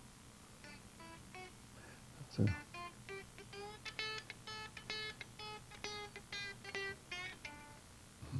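Electric guitar played in chicken-picking style: a run of quick, snapping single notes, sparse and faint at first, then busier and louder from about two and a half seconds in, stopping just before the end. A brief low thump comes just before the run picks up.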